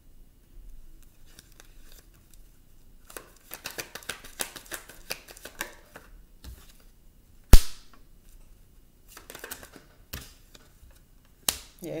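Tarot cards being shuffled and handled on a wooden table: a run of rapid flicking clicks about three seconds in, then one sharp, much louder slap or snap about halfway through, and a few more card clicks near the end.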